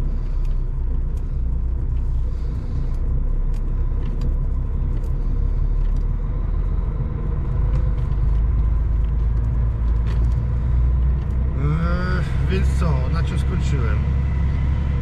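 Truck's diesel engine running steadily at low speed, heard from inside the cab as a continuous low rumble. A short stretch of voice comes in near the end.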